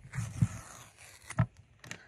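Handling noise from the phone being set down lens-down on a wooden table: a brief scrape, then a sharp knock about a second and a half in and a couple of small clicks near the end.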